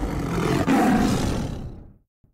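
Tiger roar sound effect, one long roar that swells, peaks about a second in and then fades out.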